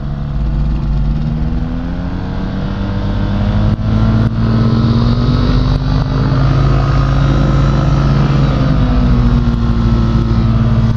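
Rotax engine of a Quad City Challenger ultralight running as the aircraft taxis in a ground turn, its pitch and loudness rising over the first few seconds and then holding steady, with a slight dip near the end.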